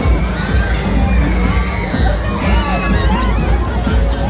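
Funfair crowd din: many voices, children among them, shouting and calling over one another, over music with a heavy steady bass.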